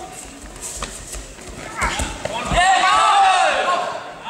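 Judo throw: a heavy thud of a body landing on the tatami mats about two seconds in, with a few lighter knocks of feet and bodies before it. Right after, several voices shout at once, louder than the throw.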